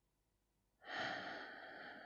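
A woman's long, breathy exhale, starting about a second in and fading out over about a second and a half: the slow release of a deep breath after holding it.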